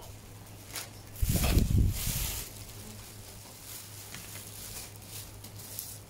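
Plastic bags rustling and crinkling as produce is handled and packed, with a louder rustle and bump from a bag being set down about a second in. A low steady hum runs underneath.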